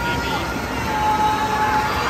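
Reverberant indoor swimming-pool noise during a race, with spectators' voices calling out over it, one call held for about a second near the middle.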